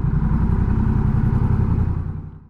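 Honda Rebel 1100's parallel-twin engine running steadily at a low idle, a smooth, even rumble of firing pulses.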